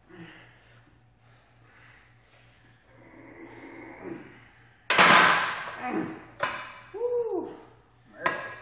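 Straining breaths and grunts from a lifter at the end of a set of close-grip barbell bench presses, then the loaded barbell racked onto the steel hooks of a power rack about five seconds in: a loud metal clang that rings briefly, followed by a smaller clank and a short vocal exhale.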